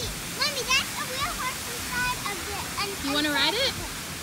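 Young children's high voices calling out in rising and falling squeals, over the steady rush of a fountain's water.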